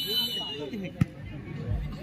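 A referee's whistle blown once for half-time, a steady high tone that stops about half a second in. A single sharp knock follows about a second in, over faint voices.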